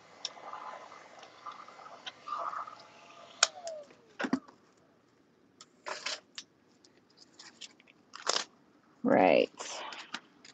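Heat gun running on low heat, then switched off about three and a half seconds in with a click and a falling whine as its fan slows, followed by a knock as it is set down. Scattered light clicks of handling follow, and a brief loud noise near the end.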